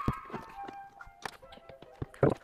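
A few light knocks and clicks of car interior parts being handled and set down on a tabletop, over faint background music with held tones.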